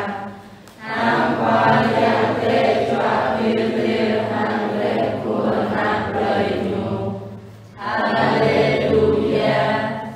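Choir singing in long sustained phrases, dropping away briefly twice, once near the start and again about three quarters of the way through.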